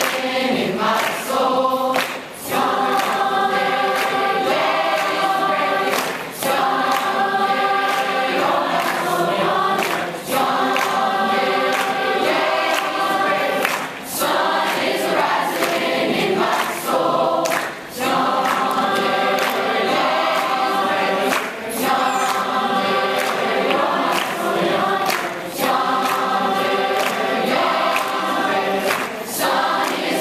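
Large mixed choir of young male and female voices singing in harmony, in phrases of about four seconds with brief breaks between them.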